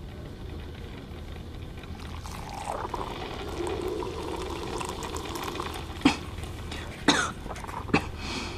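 Espresso machine running as it dispenses coffee into a glass cup, followed near the end by a few short, sharp coughs from someone with a cold.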